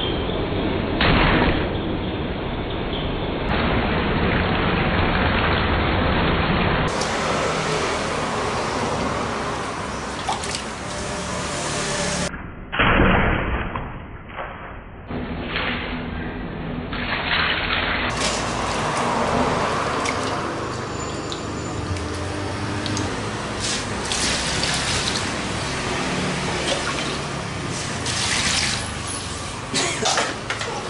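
Water running into a stainless-steel basin and splashing as cut pieces of snakehead fish are washed in it.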